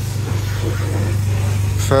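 Abarth 595 Turismo's 1.4-litre turbocharged four-cylinder idling with a steady low drone.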